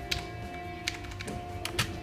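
A song playing faintly through a small wired speaker driven by the TLV320AIC33 codec, streamed over Bluetooth from a phone, with a few sharp computer-keyboard clicks over it.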